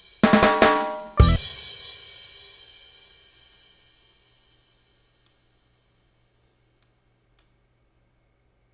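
Drum-kit samples played back: a quick fill of about three hits, then a cymbal crash about a second in that rings out and fades away over roughly three seconds, leaving only a few faint clicks.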